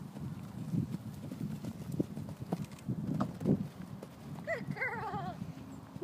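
Hoofbeats of a grey horse moving loose over a sand arena, irregular dull thuds. Near the end a faint wavering whinny starts high and falls.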